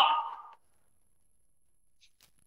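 The last word of a short spoken announcement, fading out within about half a second, then near silence.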